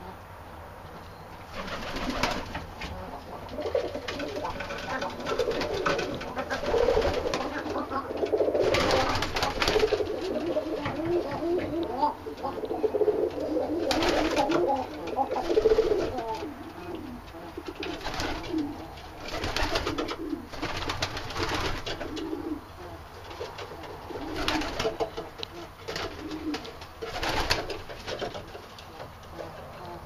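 A loft of Arabian trumpeter pigeons cooing, several birds calling over one another, busiest in the first half and thinning out later. It is ordinary cooing, not the drumming trumpet call the breed is kept for. A few short sharp noises cut in now and then.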